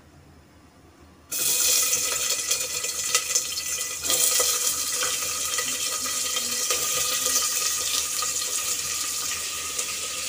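Chopped onions going into hot oil with cumin and dried red chillies, sizzling loudly. The sizzle starts suddenly about a second in and holds steady.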